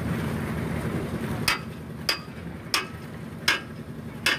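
Low steady rumble for about the first second and a half, then four sharp knocks roughly every 0.7 s from hand tools striking while wet concrete is worked on a roof slab being poured.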